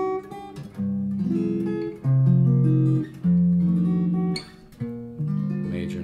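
The Loar LH-280 laminated archtop guitar, lightly amplified, playing a slow run of jazz chords: about five chords, each strummed and let ring for roughly a second.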